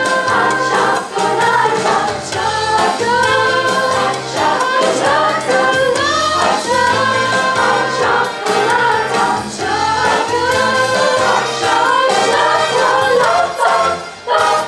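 Female choir singing in close harmony, with a steady bass line of low held notes underneath.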